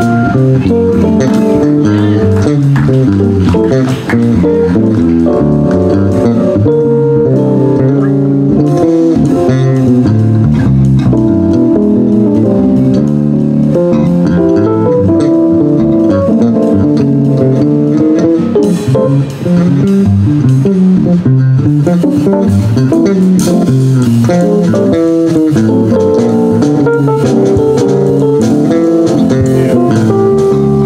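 Live jazz band playing an instrumental, with electric guitar and bass guitar over drum kit and keyboard.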